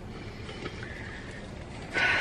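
Steady background noise inside a car cabin, with a faint thin tone appearing briefly around the middle.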